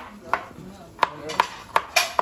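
Stone pestle knocking against a stone mortar (cobek) while crushing shallots: five sharp, ringing knocks, spaced unevenly.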